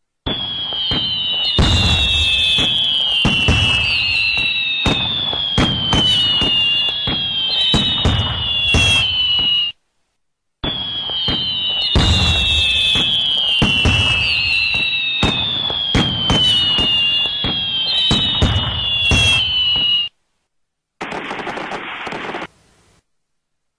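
A rapid series of sharp bangs and pops with falling whistles over them, like a fireworks sound effect. It plays for about ten seconds, cuts off, and repeats the same way. A short burst of hiss follows near the end.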